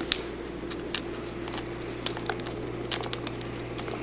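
Faint scattered clicks and rustles of hands handling wired gum paste flowers on a cake, with the sharpest click just after the start, over a steady low hum.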